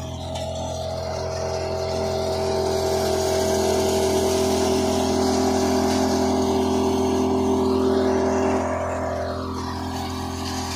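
Tractor-driven soybean thresher running, a steady mechanical drone with several fixed pitches under it. About two seconds in it grows louder with an added hiss as crop passes through, then drops back shortly before the end.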